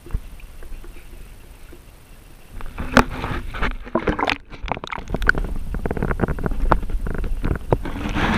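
Water sloshing and splashing right at the microphone, held down at the raft's waterline, with many handling knocks and clicks; a low rumble at first, getting louder and busier about two and a half seconds in.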